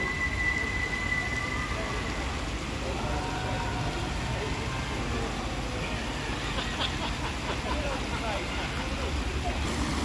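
Outdoor city ambience: a steady low rumble of distant traffic, with faint voices of people nearby, heard more in the second half.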